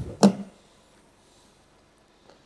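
A single sharp knock about a quarter of a second in, as the Volkswagen Polo's tailgate comes to its fully open stop, then quiet room tone.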